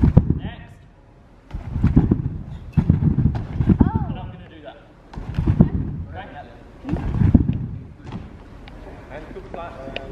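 Trampoline bed taking repeated landings: a series of heavy thumps, one every one to two seconds.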